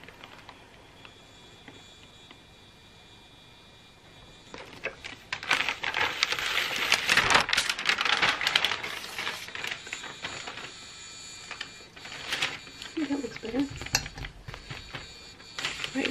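Paper backing sheet crackling and rustling as it is handled and peeled from vinyl fuse ironed onto felt, starting about four seconds in and loudest in the middle, with a few scattered crackles near the end.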